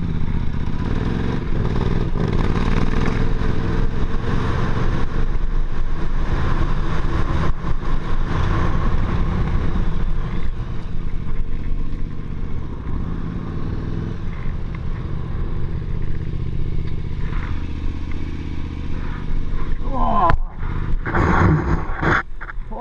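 KTM 950 Super Enduro's V-twin engine running at low revs as the bike rolls slowly over gravel, a little quieter in the second half. A few words are spoken near the end.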